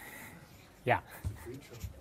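A man says "yeah" once, about a second in, over faint room noise, followed by a couple of soft low bumps and rustles.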